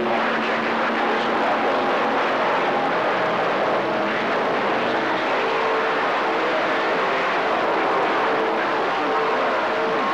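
CB radio receiver tuned to skip: a steady rush of static with short whistling tones at different pitches coming and going, from distant stations breaking through.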